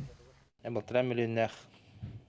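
Speech only: a man's voice speaks a short phrase beginning about half a second in, followed by a pause.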